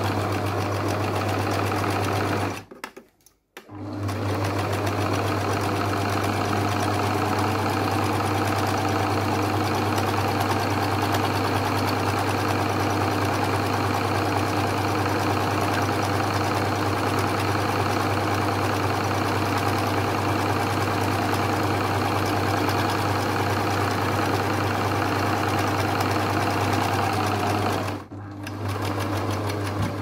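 Electric domestic sewing machine running at a steady speed, stitching along the edge of a fabric strap. It pauses briefly about three seconds in and stops near the end.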